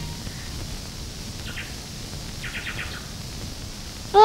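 Faint bird chirps over a low hiss: a brief chirp about one and a half seconds in, then a quick run of chirps a second later.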